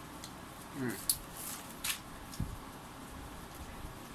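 A person eating roast chicken close to the microphone: a short hummed 'mm' of enjoyment, then a few sharp mouth clicks and smacks from chewing, and a soft low thump about halfway through.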